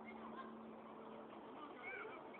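Faint high-pitched shouts and squeals of young children playing at a distance, many short voices overlapping, over a steady low hum.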